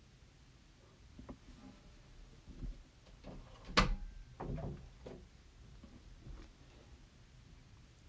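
Faint knocks and scrapes of a large hand file and a styrofoam block being handled and filed, with one sharp click just before the fourth second.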